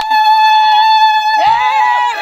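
A woman's long, high-pitched celebratory cry held on one steady note, with a second voice joining in about one and a half seconds in.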